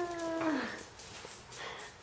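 A small dog whining: one held, even-pitched whine that drops in pitch and stops about half a second in.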